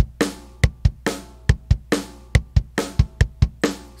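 A sampled rock drum kit played back from a drum-machine pattern. Two kick-drum beats are followed by a snare hit, in a steady, repeating tum-tum-ta rock beat.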